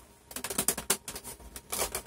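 Plastic back panel of a Lenovo IdeaCentre all-in-one PC being gripped and tugged by hand, giving irregular small plastic clicks and rattles as it is worked loose.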